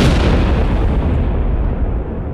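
Rumble of a huge explosion, the sound effect of the nuclear strike, dying away: its hiss fades first and the deep rumble lingers.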